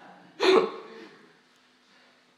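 A woman's single short burst of laughter about half a second in, trailing off quickly.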